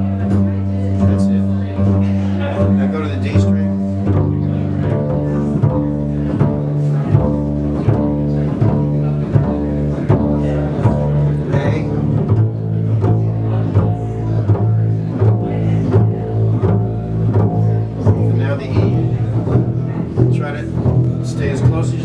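Double basses played pizzicato together, each player re-striking the same note again and again in a steady pulse so the pitch keeps ringing like a struck bell. The note changes twice, about four seconds in and again about twelve seconds in.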